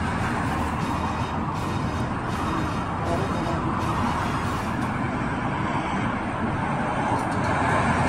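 Steady rushing roadside noise, like passing road traffic, at an even level throughout.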